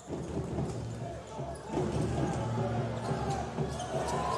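A basketball being dribbled on a hardwood court over arena crowd noise with voices.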